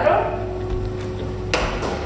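Glass jars knocking and clinking against each other and a stainless-steel worktop as they are handled, with one sharp knock about one and a half seconds in, over a steady hum.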